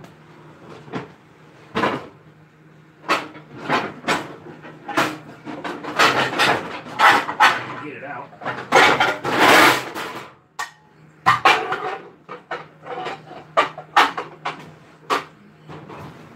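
Metal baking pans being rummaged out of a kitchen cupboard: a run of sharp clanks and knocks, with a longer clatter about nine seconds in.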